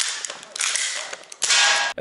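A gel blaster pistol fired in a rapid run of sharp shots and clicks while the shooter moves through an indoor course. A louder rush of noise comes just before the end.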